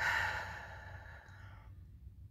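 A woman's long audible sigh: a breathy exhale that starts suddenly and fades away over about a second and a half.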